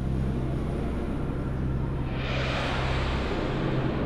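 Ambient drone soundtrack: a low, steady hum of held deep tones, with a rushing noise that swells in about halfway through and eases off near the end.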